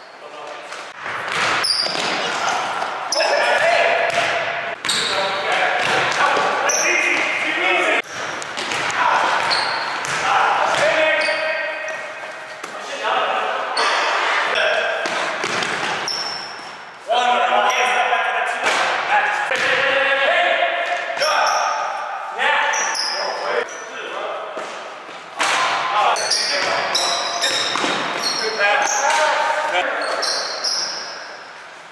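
Basketballs bouncing on a hardwood gym floor, the impacts echoing around a large hall, with players' voices calling out between them.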